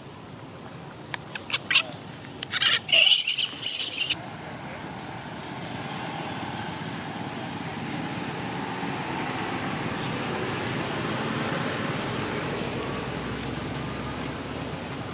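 A few sharp clicks, then a loud burst of high-pitched squeals from a young macaque lasting about a second and a half, followed by a steady background hiss.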